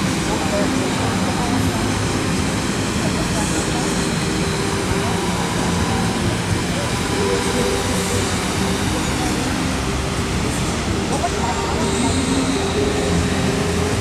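Bellagio fountain jets spraying high and splashing down into the lake, a loud, steady rush of water, with crowd voices mixed in.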